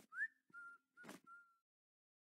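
A person whistling a few casual notes: a quick rising note, then three level notes at one pitch.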